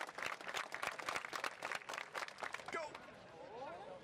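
A quick, dense run of sharp claps from spectators clapping along with a vaulter's run-up, lasting about two and a half seconds, then faint voices in the background.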